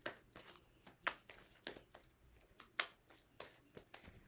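Tarot deck being shuffled by hand: faint, uneven taps and swishes of cards sliding against each other, about a dozen in all.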